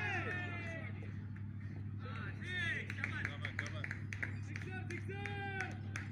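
Several people on a cricket ground shouting and calling out as a ball is hit high into the air, in a few separate bursts, with scattered sharp claps, over a steady low hum.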